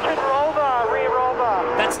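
A pack of V8 Supercar touring-car engines. Their notes fall in pitch in several sweeps as the cars lift off and brake into a corner, then settle onto a steady note near the end.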